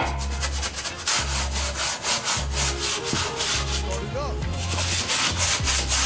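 Small stiff brush scrubbing the bare painted-metal floor pan and seat mount of a stripped car interior, in quick repeated strokes, several a second. A low pulsing bass runs underneath.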